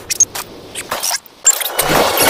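Heavily sped-up cartoon soundtrack: a fast, irregular jumble of chopped noisy bursts and clicks with brief high-pitched blips, swelling loudly near the end.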